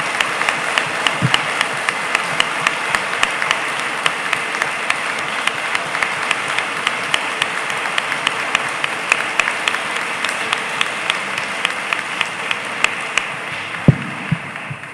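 Audience applauding steadily: many hands clapping together, with individual sharp claps standing out from the dense patter.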